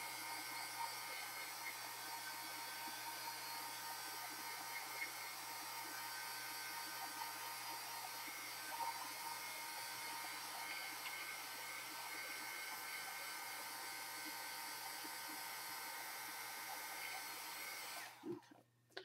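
Handheld craft heat gun blowing steadily, drying wet alcohol ink on paper; it cuts off suddenly at the end.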